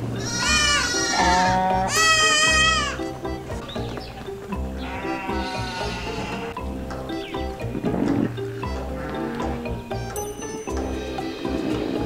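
Sheep and goats bleating in a crowded pen: three loud, drawn-out bleats in the first three seconds, then fainter scattered bleats. Background music plays throughout.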